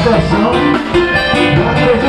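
Live band playing upbeat dance music, with electric guitar and drums.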